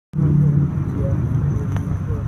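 Low, steady rumble of a motor vehicle, with a single sharp click near the end.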